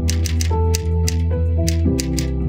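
Typewriter keys striking the paper in quick, irregular succession, several clacks a second, over background music with held notes and a deep bass.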